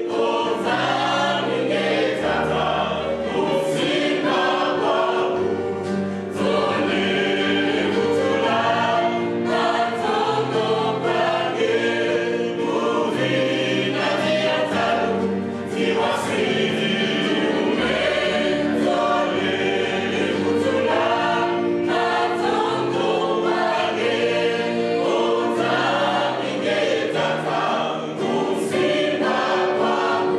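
Mixed gospel choir of women and men singing together over a bass line whose low notes change every second or two.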